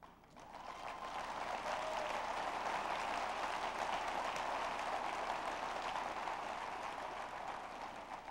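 Audience applauding, swelling over the first second, holding steady, then dying away near the end.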